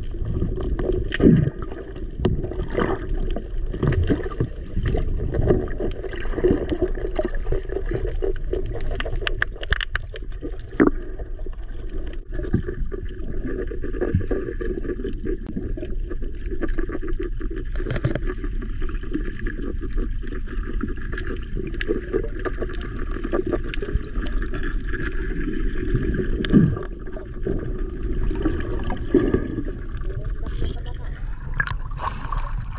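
Underwater sound picked up by a submerged camera: a steady muffled rush of water, scattered with small clicks and knocks. Two knocks stand out, one near the start and one near the end, and a faint steady whine comes in about halfway through.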